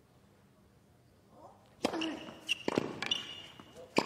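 Near silence at first, then a tennis racket strikes the ball on the serve about two seconds in with a sharp pop, followed by further crisp racket-on-ball hits as the rally starts, about half a second later and again near the end.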